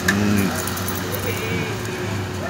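Street traffic noise with a steady low hum and background voices, with one sharp knock right at the start.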